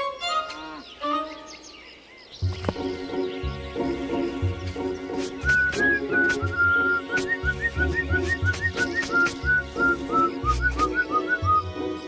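Cartoon background music: a couple of seconds of squeaky, gliding whistle-like sound effects, then about two and a half seconds in an upbeat tune starts with a bouncing bass, a regular beat and a high melody of short repeated notes.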